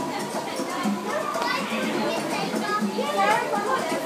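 Background chatter: several voices, children's among them, talking and calling over one another without clear words.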